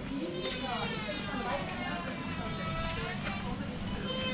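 A voice singing long, drawn-out notes that waver slowly in pitch.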